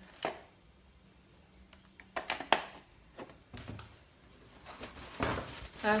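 Light knocks and clicks of things being handled and set down on a kitchen counter, scattered and irregular, the sharpest about two and a half seconds in.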